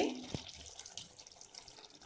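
Thick tomato-onion gravy simmering faintly in a pan, with a single soft knock about a third of a second in.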